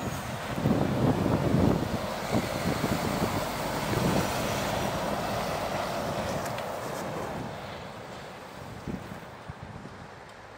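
Articulated lorry driving past close by: engine and tyre noise that swells to its loudest about a second in, then fades steadily as it pulls away.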